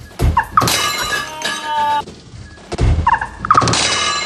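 A person crashing down onto a wooden floor as the cups they were carrying smash, heard twice: once about a third of a second in and again just before three seconds. The fall follows a slip on oil poured on the floor.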